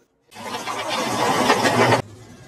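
Motorcycle engine running, coming in after a brief silence and growing louder, then cut off abruptly.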